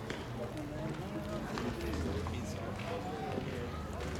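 Distant voices of players and spectators at a baseball field, several people talking and calling out at once with no clear words, over a low steady hum.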